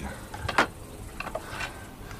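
Metal hand tools clinking and knocking as they are handled and picked out: one sharp click about half a second in, then a few lighter taps.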